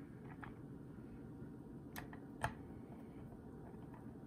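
A handheld Torx screwdriver clicking against small steel screws while fastening the plate of a transmission mechatronic unit: a few light clicks and one sharp, louder click about two and a half seconds in, over a steady low hum.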